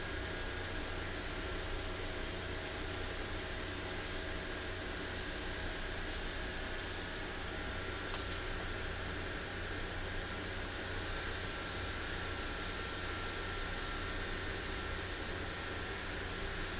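Steady room noise: an even hiss over a constant low hum, unchanging throughout, with one faint click about halfway through.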